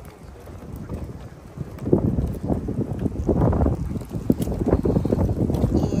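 Wind buffeting the microphone: a low, uneven rumble that grows louder and gustier about two seconds in.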